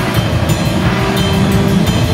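Rock band playing live in a rehearsal room: loud electric guitars over a drum kit with cymbal hits, a guitar note held for under a second near the middle.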